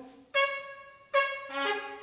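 Electronic keyboard playing two held notes, the first about a third of a second in and the second about a second in, with a lower note joining shortly after.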